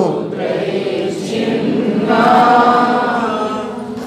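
A man chanting a line of Sanskrit verse in the Shikharini metre, ending on a long held note.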